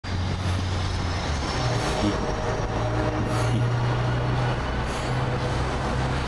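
Large truck's engine idling, a steady low drone.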